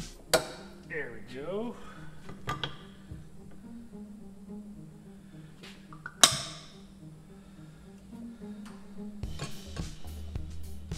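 Metal clinks of a disc brake caliper and its pads being handled on a workbench as the pads are swapped. Two sharp clinks stand out, the first just after the start and a louder one about six seconds in, over steady background music.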